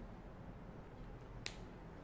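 Faint room tone with a single short, sharp click about one and a half seconds in.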